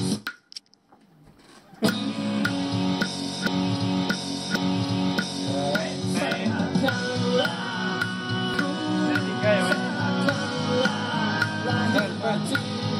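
A guitar-led band song played back through studio monitors, with a steady beat of about two strokes a second. It starts abruptly about two seconds in, after a brief near-silent gap.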